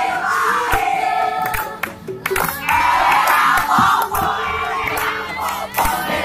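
A mixed group of teenage boys and girls singing together loudly, accompanied by an acoustic guitar.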